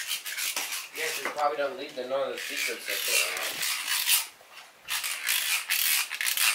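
Handling noise from a handheld camera: the microphone rubbing and scraping against clothing as the camera is carried, in a run of rough strokes. A child's voice mumbles a few unclear sounds in the middle.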